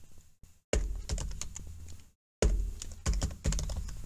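Typing on a computer keyboard: a run of quick key clicks, with a brief break a little after two seconds in.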